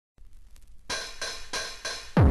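Electronic hi-hats opening an early-1990s hardcore gabber techno track: faint quick ticks at first, then from about a second in louder open hi-hat hits about three times a second, with no kick drum yet.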